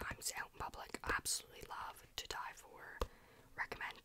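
A woman whispering close to the microphone, in ASMR style, with a sharp click about three seconds in.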